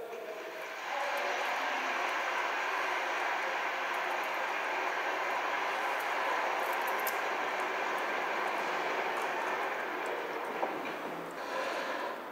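Large audience applauding steadily, swelling about a second in and dying away near the end.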